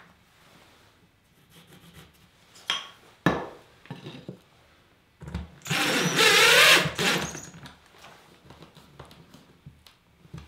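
Cordless drill driving a 1¼-inch coarse sheetrock screw through a wooden cleat into drywall for about two seconds, its motor pitch wavering as it runs. It is preceded a couple of seconds earlier by two short knocks.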